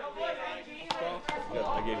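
Young men's voices talking and laughing, with two sharp claps about a second in, less than half a second apart. A steady musical tone comes in near the end.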